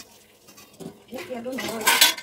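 A wavering, pitched vocal call a little over a second in, lasting under a second, followed near the end by a loud, sharp clatter.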